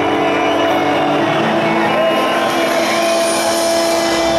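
Rock band playing loud: distorted electric guitars with a saxophone, and a long held note from about halfway through.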